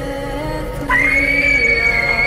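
Eerie horror soundtrack music: a low sustained drone, joined about a second in by a sudden, louder high-pitched held tone that rises slightly.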